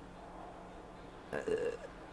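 Quiet room tone with a faint steady hum, broken about a second and a half in by one short throaty vocal sound from a man.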